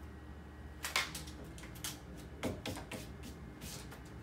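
A few short rustles and light taps from a leather bracelet and its transfer paper being handled, spaced about a second apart, over a faint steady low hum.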